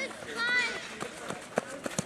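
A child's high shout about half a second into the clip during a youth football game, followed by a few short thuds in the second half from footsteps and a kick of the ball on the cinder pitch.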